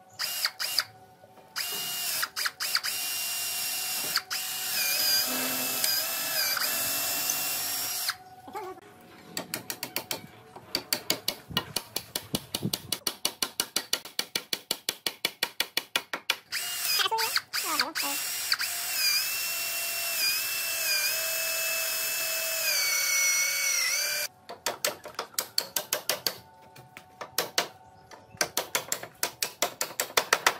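Cordless drill boring through green bamboo poles, its motor whine dipping and recovering in pitch as it bites, in two long runs. Between and after the runs come series of rapid, evenly spaced knocks.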